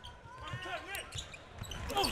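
A basketball being dribbled on a hardwood court, with short thuds against the low hum of an arena, faint voices and a few brief squeaky tones.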